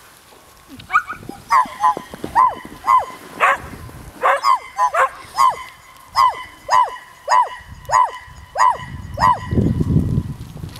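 A dog barking repeatedly in short, high barks, about two a second, from about a second in until near the end.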